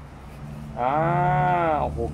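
A person's long, drawn-out exclamation of amazement, "oh-hoh" (Thai โอ้โห, "wow"), held for about a second and rising then falling in pitch, over a steady low hum.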